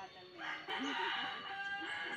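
A rooster crowing once, one long call of just over a second.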